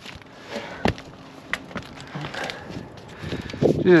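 A few light knocks and scuffs against a low background, the sharpest about a second in. They come from work among loose framing lumber on an asphalt-shingle roof.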